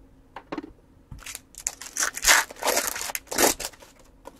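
Foil trading-card pack wrapper being torn open and crinkled: a run of short ripping, crackling sounds starting about a second in and lasting about two and a half seconds.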